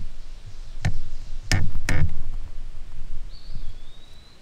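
Four sharp knocks in the first two seconds, then a faint short high whistle near the end.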